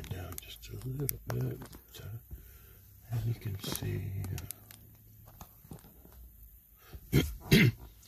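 A man's quiet, indistinct speech inside a car cabin, then two short, loud vocal bursts about seven seconds in.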